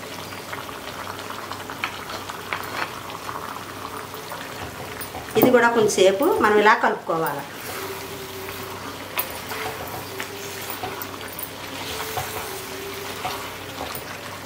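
Chicken curry sizzling and bubbling in a clay pot, stirred with a ladle and a spatula as ground spice is mixed in.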